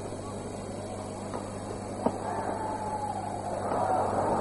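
Badminton racket strikes on a shuttlecock in an arena full of crowd noise over a steady low hum: two sharp hits about a second and a half and two seconds in, the second the louder. The crowd grows louder near the end.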